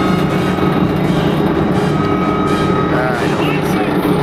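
A steady low mechanical drone, like an engine running, with faint voices and a thin high tone heard twice.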